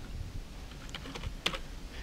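A few faint keystrokes on a computer keyboard as a password is typed, the clicks falling in the second half, the last about one and a half seconds in the loudest.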